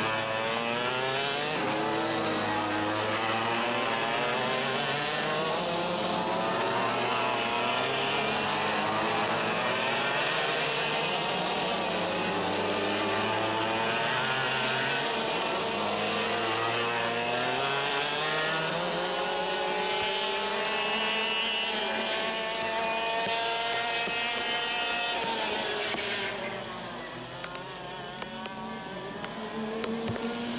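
Several IAME X30 125cc two-stroke kart engines revving up and down as the karts race past, their pitches overlapping, rising and falling. The sound gets quieter about four seconds before the end.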